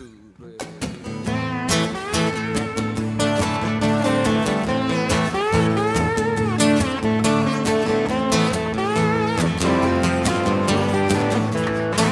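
Instrumental intro by an acoustic band, led by an acoustic guitar played with a bottleneck slide whose notes glide in pitch, over the rest of the band. It starts about half a second in, right after a count-in.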